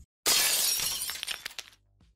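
A sudden crash about a quarter second in: a burst of noise across the whole range that fades over about a second and a half into scattered small clicks, then stops dead.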